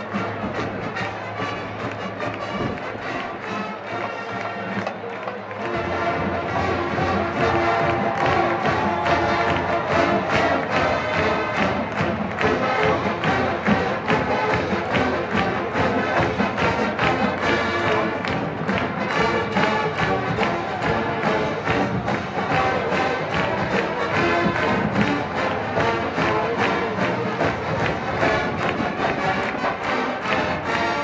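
Marching band of brass and drums playing in a stadium. The sound is thinner at first, then about six seconds in the full band comes in, louder, with a steady drumbeat.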